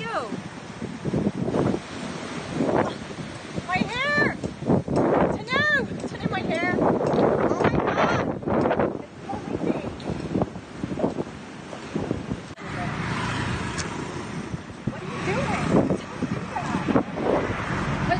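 A woman's voice making exclamations, including a few drawn-out rising-and-falling calls, over wind buffeting the microphone and surf breaking.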